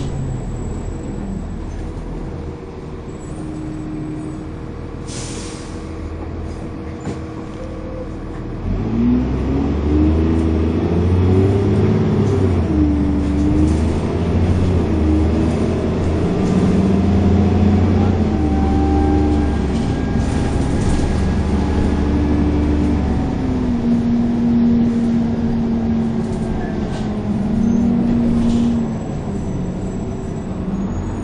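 Dennis Trident 2 double-decker bus's diesel engine heard from inside the saloon: running quietly for the first nine seconds, then pulling hard under full throttle. The engine note climbs and drops back as the automatic gearbox changes up several times, then holds a steady high drone before easing off near the end, with a couple of short hisses along the way.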